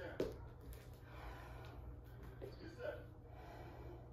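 A person breathing hard and gasping with exertion between burpee reps, with a short voiced gasp near the end. A single sharp thump on the floor comes about a quarter second in.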